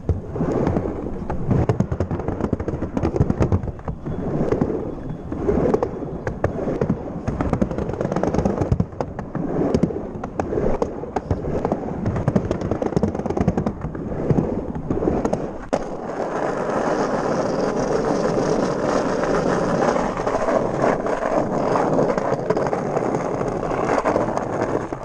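Small wheels rolling over paving stones and a pump track, clattering with rapid knocks; about two-thirds of the way through the rattle gives way to a smoother, steady rush.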